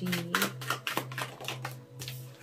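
Tarot cards shuffled by hand, a quick run of crisp card clicks, about six a second, over a steady low hum.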